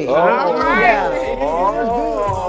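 A person's voice held in one long, wordless, sing-song call that rises to a high peak about a second in and falls again.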